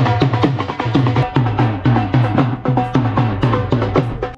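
Dhol, the two-headed barrel drum, beaten in a steady rhythm of about three deep strokes a second, with higher ringing tones over the beat.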